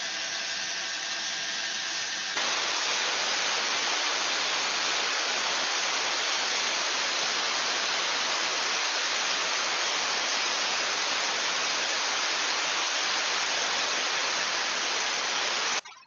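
Boiler safety valve lifted and blowing off steam to the atmosphere: a loud, steady hiss that grows louder about two seconds in and then holds. The valve opening is the sign that boiler pressure has reached the valve's set point and that the valve works.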